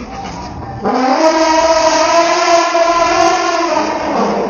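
Asian elephant trumpeting angrily: one loud, brassy call about three seconds long, starting about a second in, its pitch rising at the onset, then held before it falls away.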